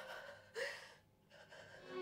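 A short, sharp intake of breath, a gasp, about half a second in, over faint background music. Soft dramatic music swells up near the end.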